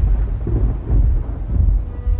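A loud, deep rumble with no clear pitch, swelling and pulsing like rolling thunder.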